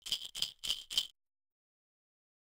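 Baby's toy rattle shaken four times in quick succession, then it stops.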